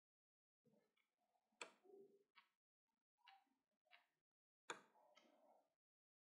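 Faint, scattered knocks and clinks as a wooden spoon scrapes diced beef from a glass dish into a steel pot. The two sharpest come about a second and a half and about four and a half seconds in.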